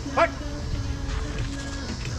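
Background music playing, cut across about a quarter second in by one short, loud yelp that rises sharply in pitch.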